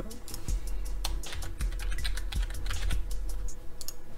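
Typing on a computer keyboard: a quick, irregular run of keystrokes as a word is typed in.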